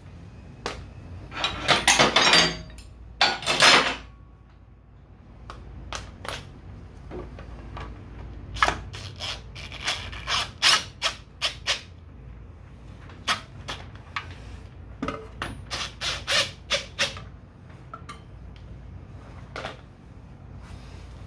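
Cordless impact wrench with a socket extension run in two short bursts on a scooter's muffler bolts, followed by a scattered run of sharp metal clinks and clatter from sockets and tools being handled.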